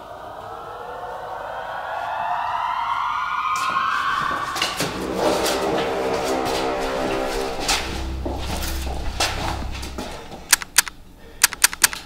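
Action-film soundtrack: a rising swell of several pitches over the first few seconds, then dense music with a held chord and percussive hits, a deep rumble around the eighth second, and a quick run of sharp cracks near the end.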